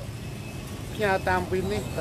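A man speaking Khmer, starting about a second in after a short pause, over a steady low background rumble.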